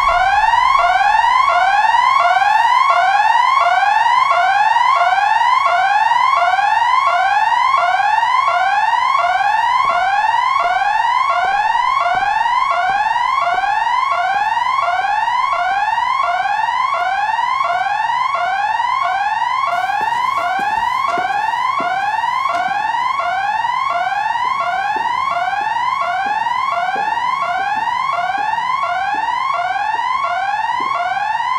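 Electronic building alarm sounding loudly: a pitched tone that sweeps upward over and over, about three times every two seconds, without letting up.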